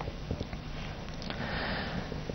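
Low studio background noise with a few faint clicks, and a soft breath drawn through the nose near the end, just before the newsreader speaks again.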